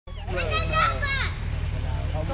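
Children's high-pitched voices calling and chattering for about the first second, over a steady low background rumble.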